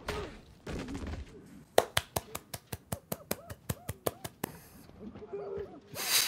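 A person stifling laughter close to the microphone: a quick run of sharp snorted breaths, about five a second, with short voiced bits of laughter between them.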